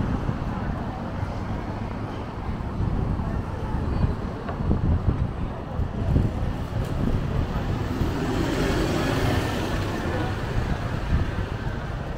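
Street traffic with a single-deck bus passing close by; its engine and tyre noise swells for a couple of seconds in the second half over a steady low traffic rumble.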